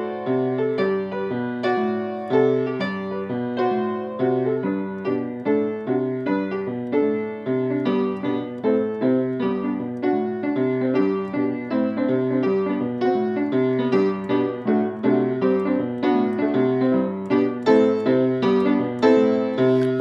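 Upright piano: the left hand plays a steady, repeating bass-line finger exercise in the low register while the right hand plays chords over it.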